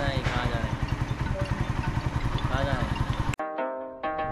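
Small motorcycle engine idling with a rapid, even putter, with brief voices over it. About three and a half seconds in it cuts off abruptly and plucked-string music begins.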